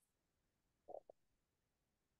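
Near silence, broken by one brief faint sound in two short pieces about a second in.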